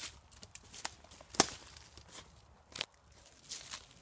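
Quiet footsteps on dry fallen leaves and twigs, with a sharp crack about a second and a half in and a smaller one near three seconds.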